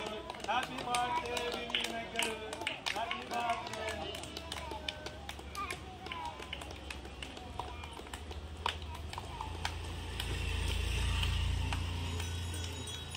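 A small crowd clapping in scattered, uneven claps, with several voices talking over one another for the first few seconds. A low rumble sets in about four seconds in and grows louder near the end.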